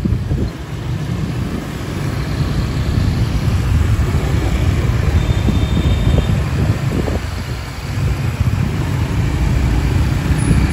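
Ride on a motor scooter through town traffic: the scooter's engine and road noise with a heavy low rumble of wind buffeting the microphone, and other scooters around.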